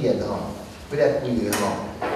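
A man speaking into a handheld microphone, in short phrases with pauses. A single sharp click sounds about one and a half seconds in.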